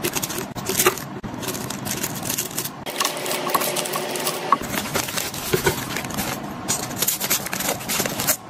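Plastic snack wrappers crinkling and rustling as small individually wrapped chocolate wafer packets are handled and set into a clear acrylic organizer bin, with light ticks and taps of the packets against the plastic.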